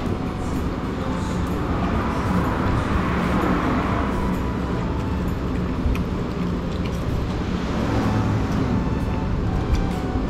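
Steady low background rumble and hiss, like road traffic heard from inside a street-side eatery, with a few faint clicks of chopsticks on food and dishes.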